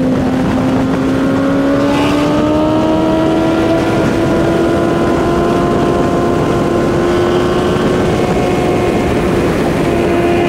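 Motorcycle engine running at freeway speed, its pitch climbing slowly and evenly as the bike gathers speed, over a steady rush of wind and road noise.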